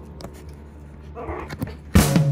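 A West Highland White Terrier puppy giving a short whimper a little over a second in, with a few faint clicks around it.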